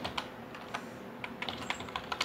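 Keystrokes on a computer keyboard: a run of short, irregularly spaced clicks as a few words are typed.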